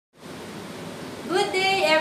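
Steady background hiss of recording noise, then a woman's voice starts a drawn-out greeting about a second and a half in.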